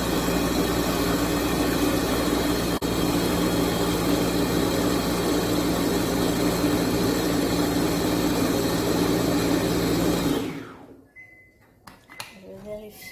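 Béaba Babycook baby-food maker's blender motor running steadily as it purées steamed apple and pear, then winding down and stopping about ten seconds in.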